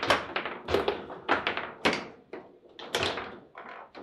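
Foosball table in play: an irregular run of sharp knocks and clacks as the ball is struck by the figures on the rods and bounces off the table walls, several a second.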